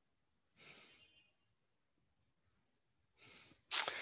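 Two short, soft breaths into a close headset microphone, about two and a half seconds apart, with dead silence between them. A voice starts right at the end.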